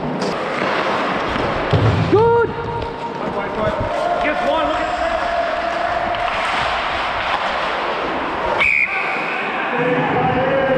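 Ice hockey play heard from a skating referee: a steady scrape of skate blades on the ice, with players shouting, and a sharp knock near the end.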